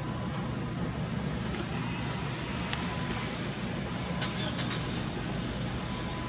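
Steady hum of city traffic, with a few faint clicks in the second half.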